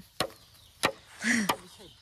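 Green bamboo being chopped with a blade: three sharp strikes about two-thirds of a second apart.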